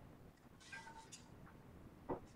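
Near silence with a faint, brief scratch and squeak a little after half a second in, from a coloured pencil writing on paper.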